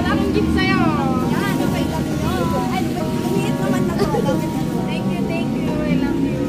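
Women's voices talking in an excited, untranscribed exchange over a steady low rumble of street traffic.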